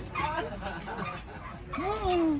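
A man's closed-mouth "mmm" of enjoyment as he eats, its pitch rising and then falling near the end, with fainter murmurs before it.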